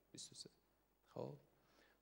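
Near silence between sentences, broken by a man's faint breath near the start and a brief, faint murmured syllable about a second in.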